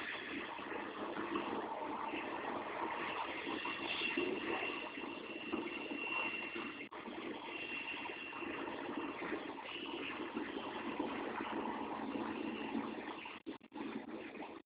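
Emergency vehicle engines running steadily, with a faint high whine that comes and goes. The sound breaks up in brief gaps near the end.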